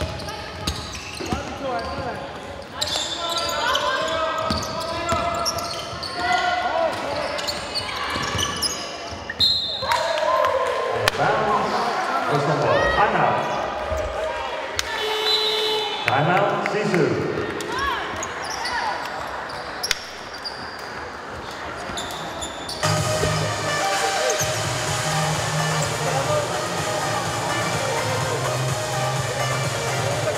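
Indoor basketball game sounds in a large hall: a ball bouncing on the hardwood floor, players' voices calling out, and a sharp whistle blast about ten seconds in. From about 23 seconds on, music with a steady bass beat plays over the hall's speakers during the break in play.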